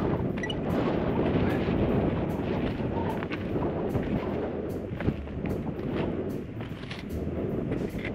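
Wind buffeting a small action-camera microphone in a dense, steady rush with uneven gusts.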